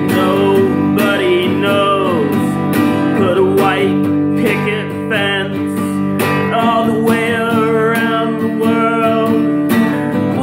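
Steel-string acoustic guitar strummed steadily through chords, with a man's voice singing a wavering melody over it.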